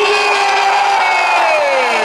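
A long, drawn-out shouted call from a voice, held and then falling in pitch near the end, over crowd noise.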